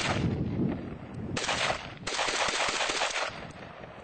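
AK-47 rifle firing on automatic in three bursts: a short one at the start, another about a second and a half in, and a longer one of about a second beginning two seconds in.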